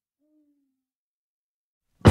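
Near silence in the gap between two tracks of a record, with one faint low tone that falls slightly in pitch and lasts under a second, a quarter second in.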